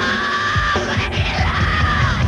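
Hard rock band playing live, the singer holding long, high notes close to a scream over steady drum hits. One held note fills the first half, and a second starts about a second and a half in.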